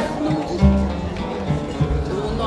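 Live acoustic guitar accompaniment with a hand drum giving deep beats, in a short instrumental gap between sung phrases of a seresta song.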